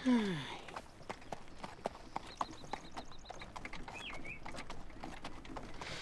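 A voiced sigh falling in pitch at the start, then a run of short sharp clicks and knocks like hooves of a horse-drawn carriage clip-clopping, with a brief quick run of high ticks in the middle.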